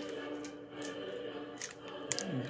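Crinkling of a plastic candy-bar wrapper and bag as a mini Kit Kat is taken out, a few short crackles a little before a second in and near the end. Faint background music with held notes underneath, fading out early.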